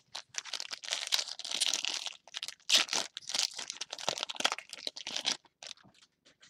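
Foil wrapper of a 2014 Bowman trading-card pack being torn open and crinkled by hand: a run of crackling rustles, loudest about three seconds in, that stops about half a second before the end.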